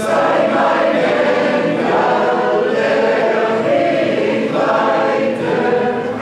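Large mixed choir of men and women singing a sustained hymn in harmony, in long phrases.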